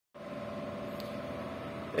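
A steady mechanical hum with a few fixed tones, unchanging throughout.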